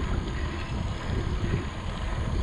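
Wind buffeting the microphone of a moving rider: an uneven low rumble with a steady hiss above it.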